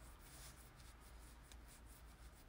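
Near silence: faint room hum with soft, irregular scratching and rubbing noises close to the microphone.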